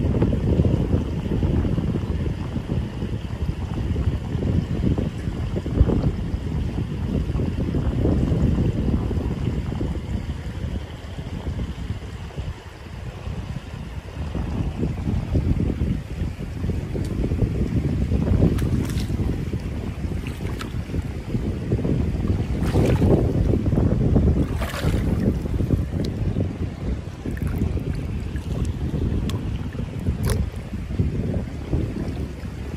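Wind buffeting the microphone, a low rumble that swells and fades, over shallow river water running across stones. A few brief clicks stand out in the second half.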